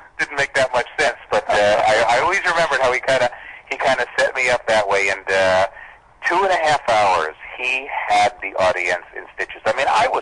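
Speech only: two men in conversation, one voice heard over a telephone line trading turns with a clearer studio voice.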